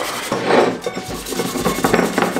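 Sandpaper rasping against an aluminium drink can in repeated rubbing strokes, sanding off the can's outer coating.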